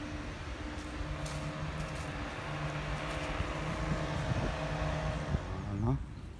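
An engine running steadily with a low hum, its pitch rising near the end before it cuts off suddenly.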